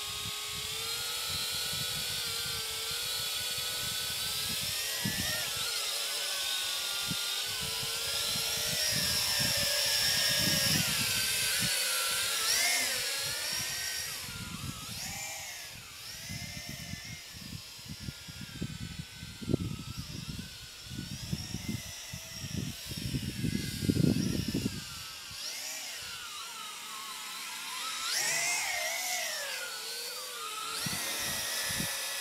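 Small toy quadcopter drone in flight, its electric motors and propellers whining in several tones that rise and fall as it lifts off and is steered. Low gusts of wind buffet the microphone through the middle part while the drone struggles against a light breeze.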